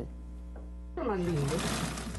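Electric sewing machine running, its noisy whir starting about a second in.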